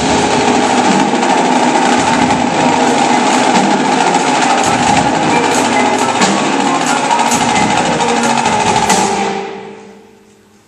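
Indoor percussion ensemble of marching snare, tenor and bass drums with a front ensemble of mallet percussion, playing a loud, dense, sustained passage. The sound dies away over the last second or so.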